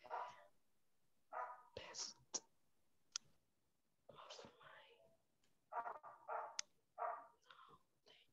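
Faint whispered speech in short phrases.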